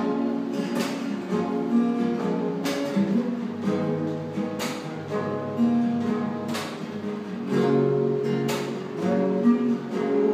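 Steel-string acoustic guitar played fingerstyle, a picked melody over held notes, with a sharp accent about every two seconds.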